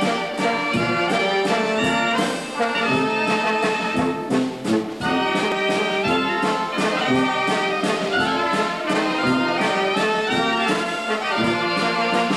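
A small German-style brass band (bandinha) playing a tune on brass instruments over a steady beat.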